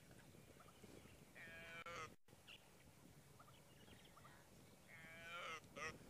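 An impala lamb that has lost its mother calls for her: two faint, drawn-out calls, about a second and a half in and again near the end.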